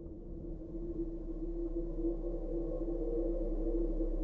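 Film trailer sound design: a sustained low drone, one steady tone over a deep rumble, swelling gradually louder.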